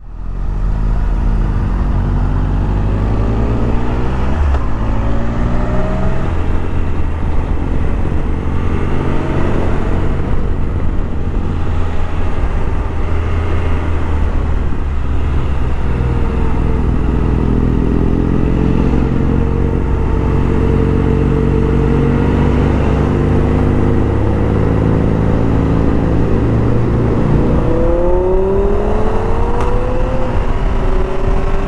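Motorcycle engine running under way, its pitch repeatedly rising and falling with throttle and gear changes, over a steady rush of wind noise. It comes in suddenly at the start and runs loud and continuous, with a sharper rising rev near the end.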